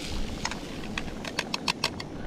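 Light clicks and taps as fried mushrooms are tipped and scraped from a metal camping pan into a bowl, coming faster toward the end, over a low steady hiss.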